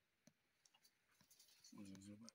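Near silence with a few faint, short clicks, then a brief sound from a person's voice near the end.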